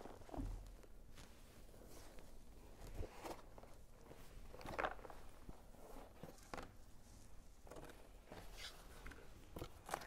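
Faint, scattered rustles and scrapes of cardboard and string being handled as string is pulled tight and knotted around a cardboard box.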